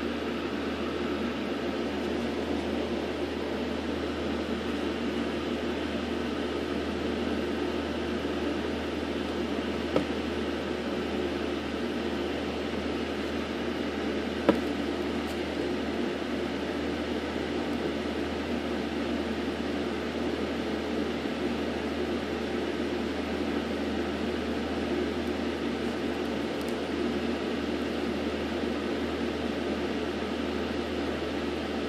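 Steady background hum and hiss of a running machine, with two brief clicks about ten and fifteen seconds in, the second louder.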